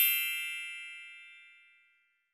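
A bright, high-pitched chime sound effect rings out and fades away over about a second and a half.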